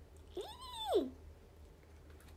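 A single drawn-out animal cry about three-quarters of a second long, rising in pitch, holding and falling again, like a meow.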